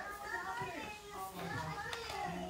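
People's voices talking, with no other clear sound.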